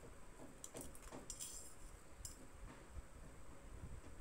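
Faint, light clicks and scratchy strokes of painting materials being handled in a quiet room: a cluster in the first half and one more click a little after two seconds.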